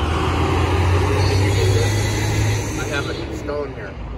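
Low rumble of passing road traffic that eases off after about two and a half seconds, with a brief snatch of voices near the end.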